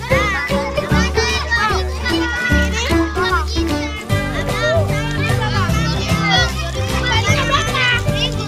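Several children talking and calling out at once in high voices, over background music with a steady bass line.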